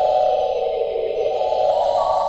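Hammond X-66 organ playing held chords that shift slowly, with a higher note coming in near the end and no percussion.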